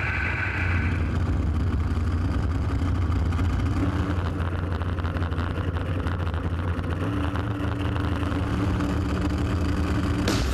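Street-race car engine idling at the starting line with a steady low rumble; about seven seconds in its pitch steps up slightly.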